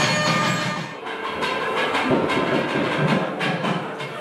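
Hindu temple ritual music during the lamp offering: a reed-pipe melody that drops away about a second in, then a fast, irregular clatter of percussion over sustained ringing tones.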